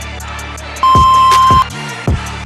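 A workout interval timer gives one long, steady electronic beep about a second in, lasting nearly a second: the tone that ends the countdown between exercises. Under it runs background music with a bass drum beat.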